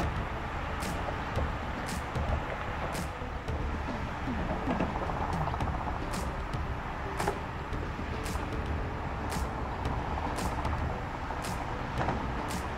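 Steady low rumble of distant car traffic crossing the Bay Bridge, with faint short high ticks at uneven intervals about a second apart.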